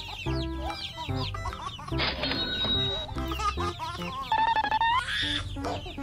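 Baby chicks peeping, many short high chirps one after another, over background music with a steady bass beat.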